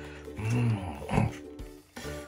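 A man's low, breathy vocal exhale, an 'ahh' of appreciation after sipping hot cup-noodle broth, followed by a shorter second vocal sound a little after a second in. Background music with steady held notes plays underneath.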